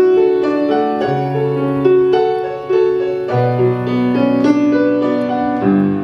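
Solo piano playing an instrumental passage: ringing chords over held low bass notes, the bass changing about every two seconds.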